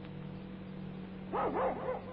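A dog barking, a short quick run of about four yaps about a second and a half in, over a steady low hum.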